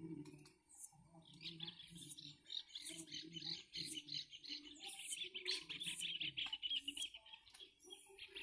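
A bird sings a long, rapid, faint trill that starts about a second and a half in and runs for about six seconds. Short faint scraping clicks come from a machete blade peeling a lime.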